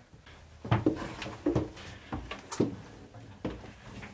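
Footsteps going down steep wooden spiral stairs: about six separate thuds on the treads, irregularly spaced.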